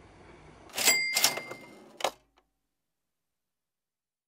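Two sharp mechanical clacks about a second in, with a short metallic ring after them, then a single click; the sound then cuts off abruptly.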